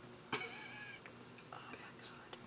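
A person's brief, faint high-pitched vocal sound that starts suddenly about a third of a second in and fades within a second.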